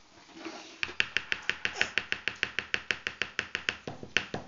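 A rapid, even run of sharp clicks or taps, about eight a second, starting about a second in.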